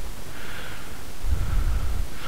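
Soft breathing close to the microphone over a low rumble, with no speech.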